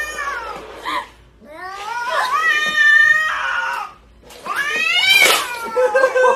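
A cat yowling: three long, drawn-out calls, each rising and then falling in pitch, with short pauses between them.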